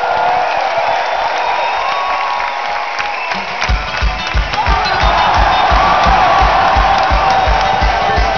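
Live Celtic punk band on stage with the crowd cheering. About three and a half seconds in, a fast, steady kick drum beat starts up.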